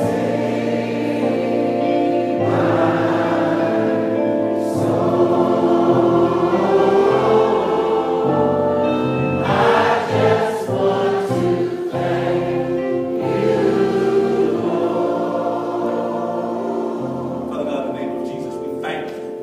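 A group of voices singing a gospel hymn together, with long held notes.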